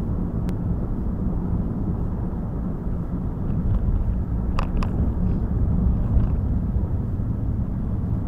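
Steady low rumble of tyre and engine noise inside a moving car's cabin at road speed. A brief high chirp sounds a little past halfway through.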